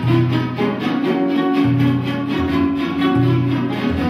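Mixe jarana ensemble music: several strummed jaranas playing a steady rhythm over a marimbola (plucked box bass) whose low notes alternate between two pitches.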